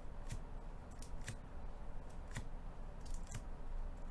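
Hard plastic card holders clicking against each other as cards in one-touch cases are moved from the front to the back of a stack: about six short, sharp clicks at irregular intervals.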